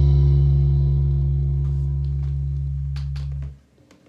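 The last low note of a song on electric bass guitar, ringing and slowly fading, then stopping suddenly about three and a half seconds in.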